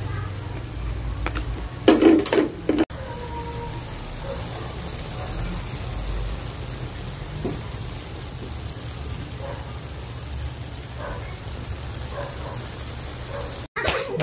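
Sea snail and vegetable stir-fry simmering in a wok, a steady sizzling hiss, with a brief louder clatter of the ladle against the pan about two seconds in.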